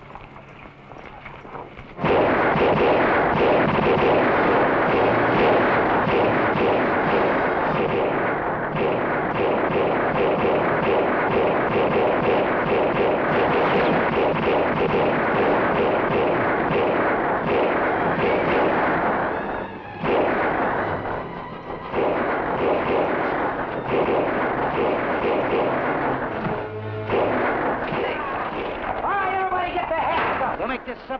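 Movie action soundtrack of a western shootout: rapid, overlapping gunshots mixed with galloping hooves, shouting and a dramatic music score. It breaks in suddenly about two seconds in and stays loud, dipping briefly twice a little past the middle.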